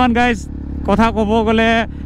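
A man talking in short phrases over the steady low drone of a KTM Duke 390 single-cylinder motorcycle cruising down the road.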